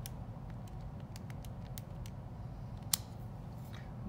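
Buttons being pressed on a TI-84 graphing calculator: a string of light, separate clicks, with one sharper click about three seconds in, over a low steady room hum.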